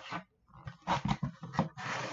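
Cardboard packaging being handled: a brown box and a white mailer knocked and shifted, a string of irregular knocks and rustles with a longer scrape near the end.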